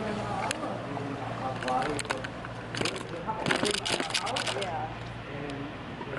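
Indistinct voices of people talking over a steady low hum, with a rapid run of sharp knocks and clicks around the middle.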